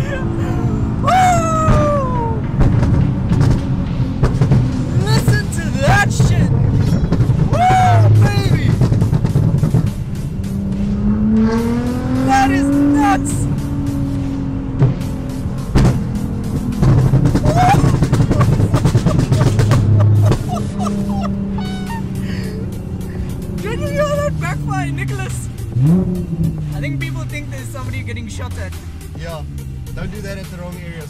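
Nissan GT-R R35's twin-turbo V6 with a straight-pipe exhaust, heard from inside the cabin under hard driving: long stretches of loud full-throttle running, with the engine note climbing and falling as it revs and lets off.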